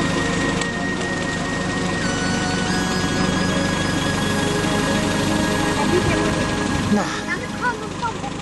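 Background music of sustained synthesizer-like tones that step down in pitch about two seconds in and back up shortly after, over a steady dense noise.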